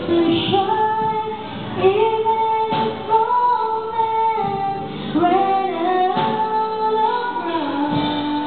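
A woman singing a slow love ballad into a handheld microphone, holding long notes and sliding between pitches.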